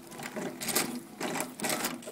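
Short irregular metallic clicking and rattling as the stuck-up Bendix drive pinion of the Onan NB engine's starter is worked by hand against the flywheel ring gear. The Bendix won't go down, jammed with mouse-nest debris in the gear teeth.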